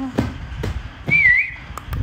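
A single short, high whistled note about a second in, lasting about half a second and wavering down and back up in pitch, with a few light clicks around it.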